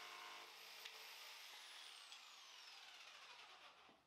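Faint jigsaw sound, heard low, with a high whine that falls in pitch as the motor winds down, then silence just before the end.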